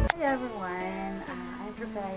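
Background music with a plucked acoustic guitar, under a woman talking.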